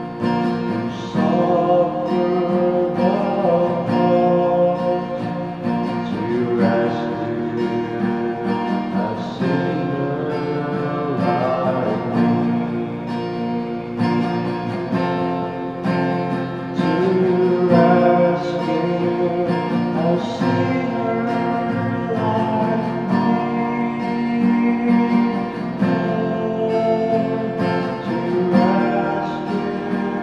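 A man singing a gospel hymn while strumming an acoustic guitar.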